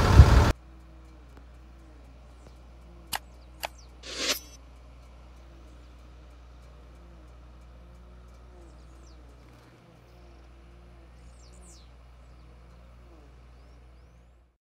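A loud noise cut off about half a second in, then faint outdoor ambience: a steady low hum with faint bird chirps. Two sharp clicks and a short noise burst come about three to four seconds in.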